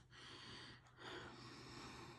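Near silence: a faint, soft hiss that swells twice, with a short dip between.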